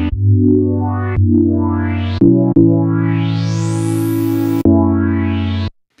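AIR Mini D software synthesizer, an emulation of the Minimoog Model D, playing sustained bass-heavy chords that change about every one to two seconds. The low-pass filter opens during each chord so the tone grows brighter, most of all in one long rising sweep from the middle to near the end. The sound cuts off shortly before the end.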